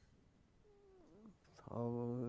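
A man's voice humming a long, steady low note that sets in loudly near the end. It follows a faint sliding, wavering call about halfway through.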